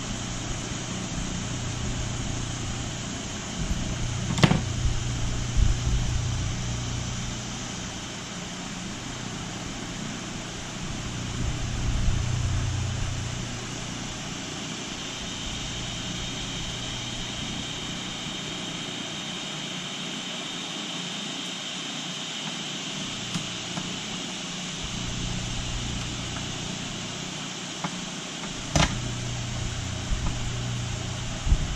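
Steady low mechanical hum of background room noise, with a few light clicks and knocks of small chainsaw parts being handled and fitted on the bench, one about four seconds in and one near the end.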